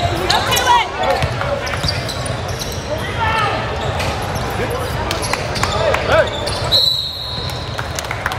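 Basketball game on a hardwood court: ball bouncing, sneakers squeaking and players and spectators calling out. About seven seconds in, a referee's whistle blows once, a steady high tone lasting about half a second.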